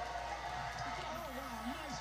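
Sound of a televised agility broadcast played through a TV speaker: steady background noise, with a voice speaking in the second half.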